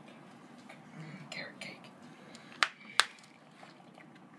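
Two sharp clicks about half a second apart near the end, from a knife knocking against a plastic cake tray while a slice of cake is cut.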